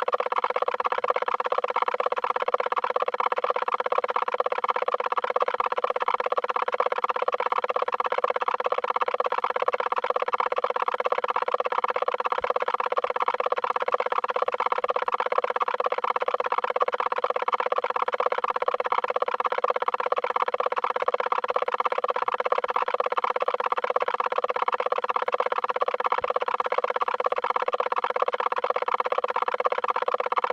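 A steady drone of several layered pitches, pulsing with a fast, even flutter and never changing.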